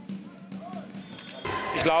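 A basketball bouncing a few times on a sports-hall floor during a wheelchair basketball game, as separate knocks about half a second apart over a low steady hum. About one and a half seconds in, the sound cuts to the louder noise of a busy hall.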